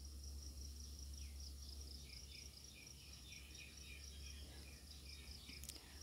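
Faint, steady high-pitched cricket chirping over a low hum, in an otherwise quiet room.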